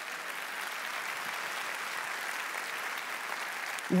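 Large audience applauding steadily in a big auditorium.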